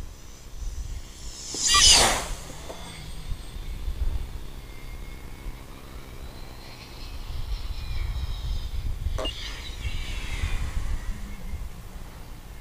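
Slope-soaring RC glider (ABm F4 Orca, 2.9 m span) making two fast close passes, its airflow whoosh and whistle dropping sharply in pitch as it goes by: a loud one about two seconds in and another near nine seconds. Low wind rumble on the microphone runs underneath.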